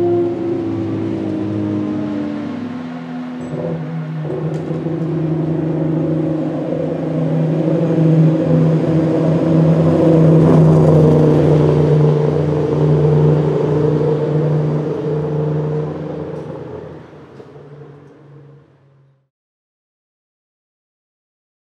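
BMW 3.0 CSL Group 2 race car's 3.2-litre straight-six running at a steady, low pace as it approaches and passes close by. Its note drops about three seconds in, holds steady, is loudest as the car goes past and then fades out, cutting off shortly before the end.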